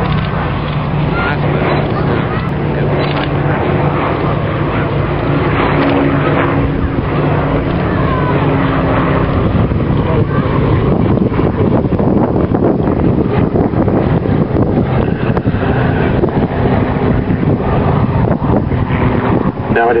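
Boeing B-17 Flying Fortress flying past, its four radial piston engines giving a steady drone.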